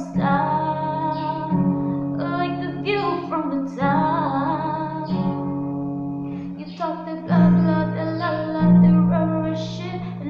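A woman singing over a strummed acoustic guitar, the guitar holding chords under the vocal line.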